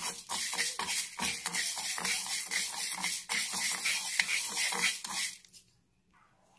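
Raw rice grains stirred and scraped in a dry pan as they are dry-roasted for thính (toasted rice powder): a dense, steady patter of small clicks and scratches that stops suddenly near the end.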